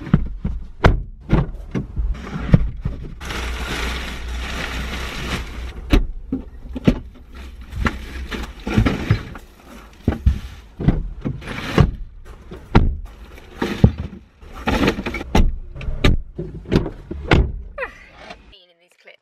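Bin bags and other items being loaded into a hatchback's boot: many irregular thuds and knocks against the car's body, with plastic bags rustling and a stretch of steady rustling about three to five seconds in.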